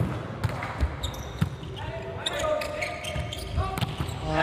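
Volleyball rally in an indoor hall: a series of sharp slaps as the ball is served, passed and set, with players shouting calls to each other.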